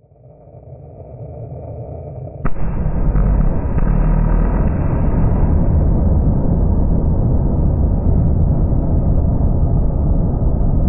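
Rocket engine on a test stand lighting up: a low rumble builds for about two seconds, then a sudden sharp crack about two and a half seconds in as it comes up to full thrust, followed by a loud, steady, deep rushing noise. The sound is slowed down along with the footage, which makes it deep and dull.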